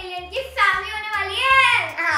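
A young girl's voice, sing-song and drawn out, ending in a long falling note, over background music with a pulsing bass.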